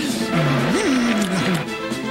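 Commercial soundtrack music with a cartoon dragon's vocal cry over it, rising and falling in pitch about half a second in and lasting about a second.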